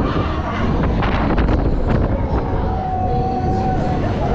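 Wind rushing over the microphone of a rider on the Air One Maxxx fairground thrill ride as it swings high through its arc, a steady heavy rush. A long held voice cry comes in over it in the last second or so.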